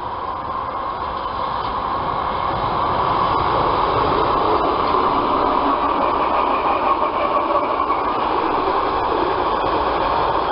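ER2-series electric multiple unit running past at close range: it grows louder as it approaches over the first few seconds, then holds a steady, loud rush of wheels and running gear as the cars go by, with a few light rail clicks.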